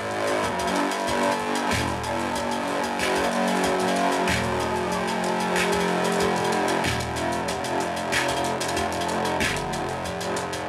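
Live band playing: sustained pitched notes over low notes that shift every second or two, with a sharp hit recurring about every 1.3 seconds.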